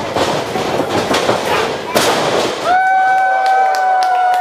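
Wrestling ring action: a rapid run of knocks and slaps as bodies and feet hit the ring canvas, with one loud impact about two seconds in as a wrestler is taken down. A little later a long, steady, high-pitched held call or tone starts and carries on.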